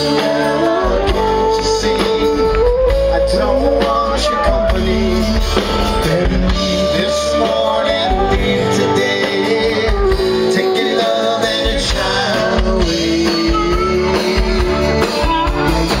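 Live rock band playing through an outdoor PA: acoustic and electric guitars, bass and drums under a held, gliding melody line.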